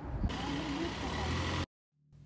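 Outdoor city street noise: a steady rushing hiss over a low rumble, with a brief voice, cutting off abruptly near the end.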